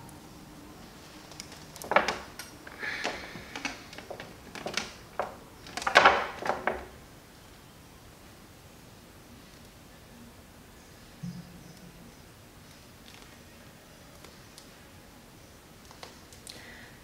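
Bursts of rustling and clicking handling noise between about two and seven seconds in, as a stretchy mesh wig cap is pulled and adjusted over braided hair.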